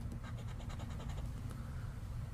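A coin scraping the coating off a scratch-off lottery ticket in a rapid run of short strokes, stopping a little past the middle.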